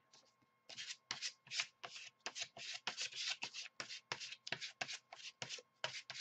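A plastic card scraping acrylic paint across paper in quick back-and-forth strokes, about four a second, starting about a second in. The paint is being spread thin.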